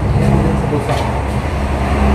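Low, steady motor-vehicle rumble with a few faint ticks over it.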